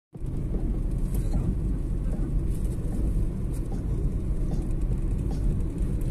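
Car driving along a paved road: steady low rumble of engine and tyre noise, heard from inside the car.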